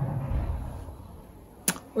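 A woman's closed-mouth 'mmm' hum while she tries to remember what comes next, fading out over about a second, then a sharp mouth click just before she speaks again.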